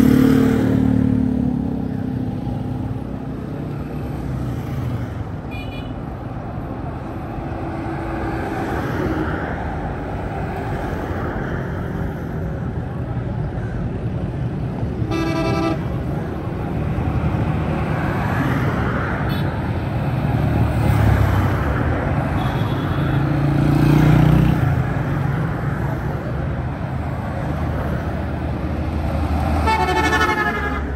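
Busy street traffic: vehicle engines swelling and fading as they pass, with several short horn toots, the clearest about halfway through.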